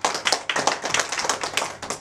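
A few people clapping their hands, quick overlapping claps running densely throughout.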